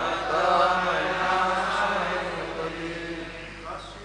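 Many voices chanting a line of a Sanskrit verse together in unison. The chant starts suddenly and tails off near the end.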